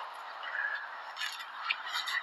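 Quiet outdoor background with a few faint, short bird chirps.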